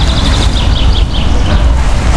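A small bird gives a quick run of short, high chirps, about five a second, that stops shortly before the end. Under it runs a loud low rumble of wind on the microphone.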